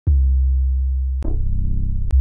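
Two 808 bass one-shot samples in C auditioned back to back: a deep sub-bass hit sounds at the start and dies away, then is cut off about a second in by the next 808 hit, which opens with a sharp click.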